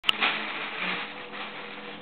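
A sharp click at the very start, then a thin plastic shopping bag crinkling and rustling in a few swells as it is lowered onto the carpet. The rustling fades toward the end.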